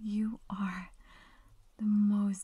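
A woman's soft-spoken voice talking close to the microphone, with a short pause in the middle. Only speech.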